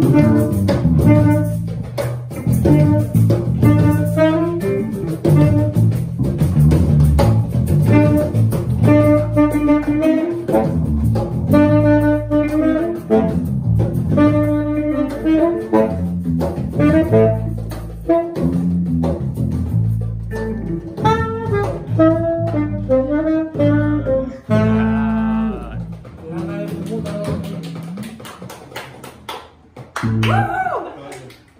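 Live jazzy jam of a saxophone playing melody lines over electric guitars with a steady beat. The music winds down and fades out over the last few seconds as the tune ends.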